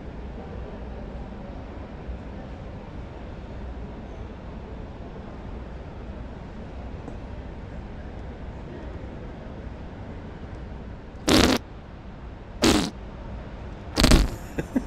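Steady background hum of a large exhibition hall, then near the end two short, loud fart-like blasts about a second and a half apart.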